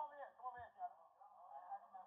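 People's voices, thin and narrow-band as if through a small speaker or phone line, with a short low thump about half a second in.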